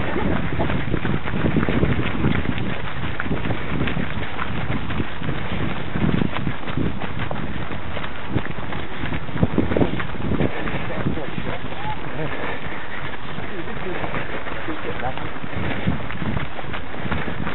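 Wind rushing over the microphone of a camera carried by a running person, with irregular low thuds from footfalls and the camera jostling.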